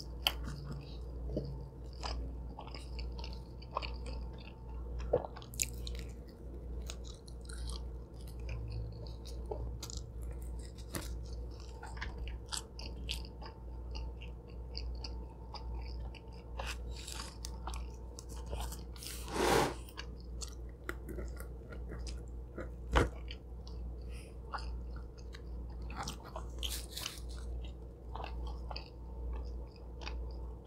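Close-miked chewing of a cheesy pizza slice: soft wet mouth clicks and small crunches of crust, with one louder crunch about two-thirds of the way through. A steady low hum runs underneath.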